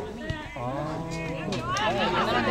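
A voice talking, with a short knock about a third of a second in.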